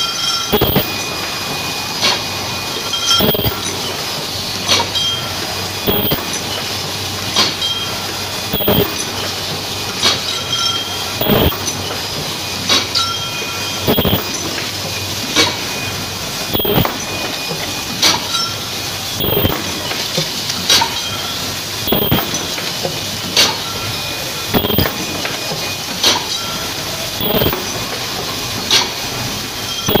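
Paper bucket forming machine running: a steady mechanical noise with a sharp knock repeating about every second and a half.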